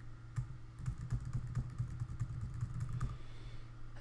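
Computer keyboard keys pressed in quick, irregular succession as the same short number and Enter are typed cell after cell, over a steady low hum.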